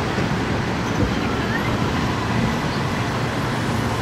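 Steady city road traffic: cars, taxis, buses and scooters passing, a continuous rumble heaviest in the low end. A brief knock sounds about a second in.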